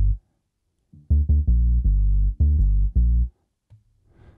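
Punchy synth dub bass line playing a run of short, low notes, starting about a second in and stopping a little past three seconds. The bass runs through the BassLane Pro plugin, which adds harmonics for stereo width, and that width is being narrowed.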